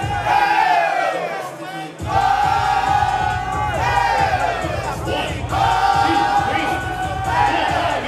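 DJ music over a crowd: long held vocal cries that sag in pitch at each end, recurring every two to three seconds over a bass beat. The bass drops out for about a second near the start, then comes back.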